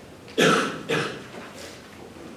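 A person coughing twice, about half a second apart: two short, sharp coughs, the first louder.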